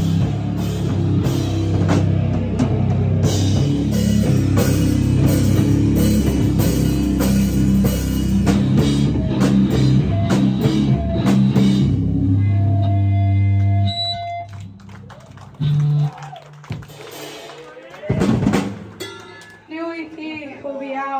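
Live rock band playing loud, with drum kit and distorted guitars. The song ends about twelve seconds in on a low note held for a couple of seconds, followed by scattered short notes and noises from the stage.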